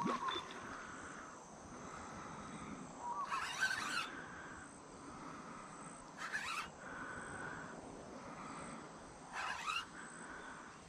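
Bush ambience of insects and birds with a steady high insect drone, broken by three short noisy bursts about three, six and nine and a half seconds in.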